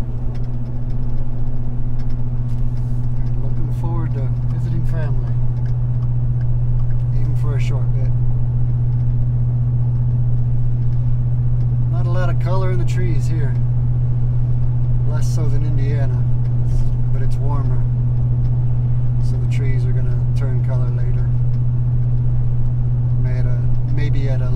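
Steady low drone of a pickup truck's engine and exhaust heard inside the cab at highway cruising speed. The exhaust runs through a Roush aftermarket muffler with an added upstream resonator and still drones into the cabin.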